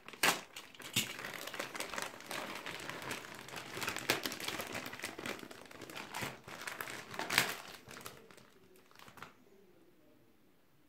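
Plastic bag of a trading-card starter pack being torn open and crinkled by hand: a dense, irregular crackle with a few louder crackles, dying away about nine seconds in.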